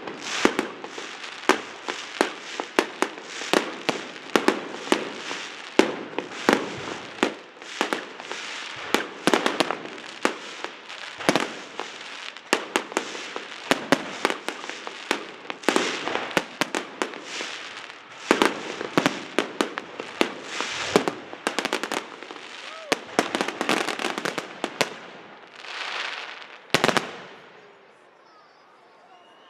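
Aerial fireworks display: a dense, rapid run of sharp bangs from bursting shells, one after another with hardly a gap, stopping about a second before the end.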